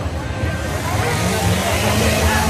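Crowd chatter, many voices talking at once, over a steady low rumble.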